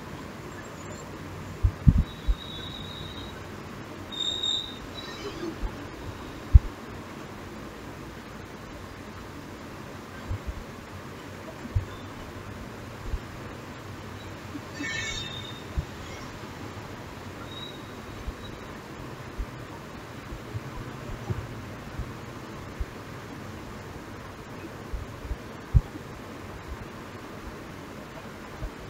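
Room tone with a steady hiss, broken by a few soft low knocks and brief high chirps, one about two seconds in, one about four seconds in and a brighter one about fifteen seconds in.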